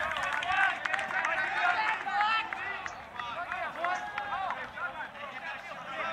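Several players' voices shouting and calling to each other across an open playing field, overlapping and somewhat distant, during an ultimate frisbee point.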